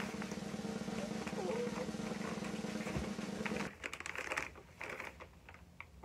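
A woman's voice holding one long steady note for about three and a half seconds over plastic and paper packaging rustling, then only the crinkle and rustle of a plastic-wrapped package being pulled from a paper mailer and handled.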